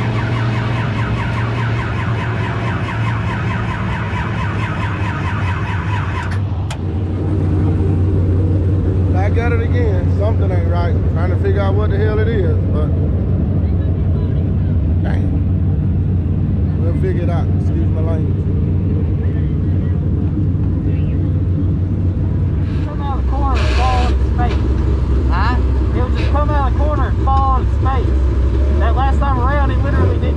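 Dirt-track crate race car's engine running hard at high revs, heard from inside the cockpit. About six seconds in it changes suddenly to a race car engine idling with a low, steady rumble, with voices over it.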